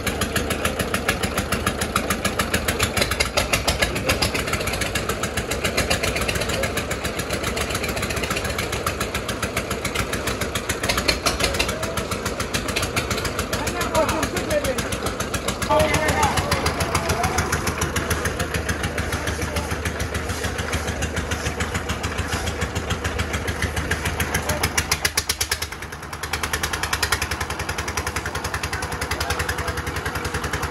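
Small single-cylinder diesel engine on a concrete mixer running steadily, with a fast, even knocking beat.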